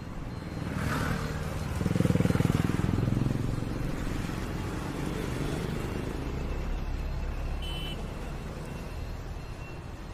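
Roundabout traffic: a motorcycle engine passes close by, swelling to its loudest about two to three seconds in and then fading, leaving a steady low hum of passing two-wheelers and cars.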